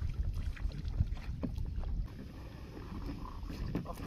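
Wind rumbling on the microphone, with faint scattered ticks and small splashes as a cast net is hauled back up out of the water by its hand line. It is a little louder in the first two seconds.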